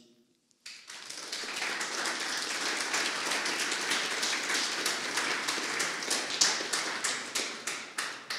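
Audience applause: dense, steady clapping that starts just under a second in and begins to thin out near the end.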